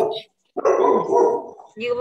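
A recorded voice clip pronouncing the vocabulary word "beach", played from a slide's audio button.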